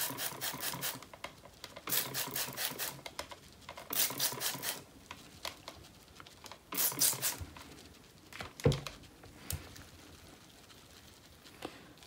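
Hand-held trigger spray bottle squirting water onto soap and wet hands, four short hissing sprays a couple of seconds apart, followed by a single knock about two-thirds of the way through.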